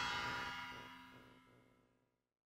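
Cymbals and a hanging gong ringing out after a final hit on a drum kit, a shimmer of many steady tones that fades away to silence about a second and a half in.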